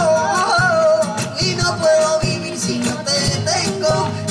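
Live rumba flamenca: a singing voice holds long, wavering, ornamented notes over strummed nylon-string flamenco guitar, with percussion keeping the beat.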